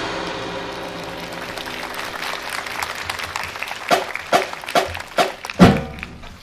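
A wind band's final chord fading out, followed by applause rising. In the second half come five sharp, evenly spaced hits, about two a second, the last the loudest.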